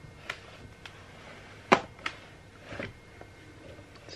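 Plywood wire soap cutter worked through a round cake of soap: a few light taps and one sharp wooden knock a little under halfway through.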